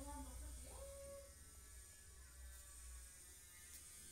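Near silence: room tone with a low steady hum that fades after about three seconds, and one faint rising call about a second in.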